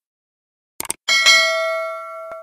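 A short mouse-click sound effect, then a bell chime that rings out and slowly fades: the click-and-notification-bell sound effects of a YouTube subscribe animation.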